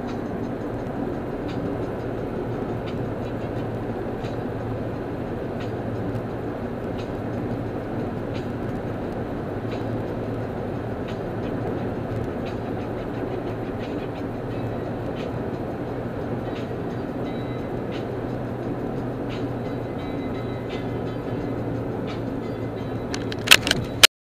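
Steady road and engine noise heard inside a car cabin while driving on the freeway, with faint regular ticks about every second and a half. A sharp knock near the end is the loudest sound.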